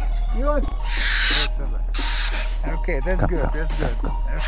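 Barn owl screeching: two harsh, hissing shrieks, one about a second in and another about two seconds in, each roughly half a second long.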